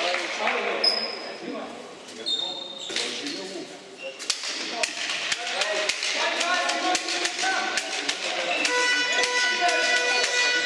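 A handball being bounced and thrown on a sports-hall floor, with a few short high shoe squeaks early on and players' shouts echoing in the hall. Music comes in near the end.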